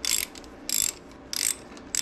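Socket ratchet swung back and forth, its pawl clicking in three short bursts about two-thirds of a second apart as it turns a 5/16 allen socket on a long extension, backing out a foot peg mount bolt that has already been broken loose.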